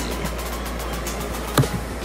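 Steady low hum and hiss of background room noise, with one brief small sound about a second and a half in.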